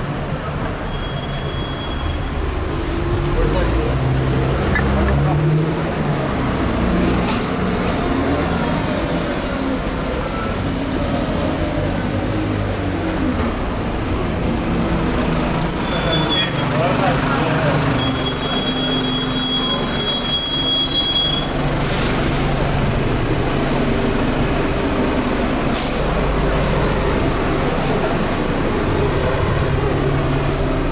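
Town-centre street traffic with a double-decker bus's diesel engine running close by, and passers-by talking. A high steady squeal sounds for a few seconds a little past the middle.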